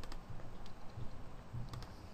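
A few faint computer mouse clicks, each one placing a boundary point of a shape in design software.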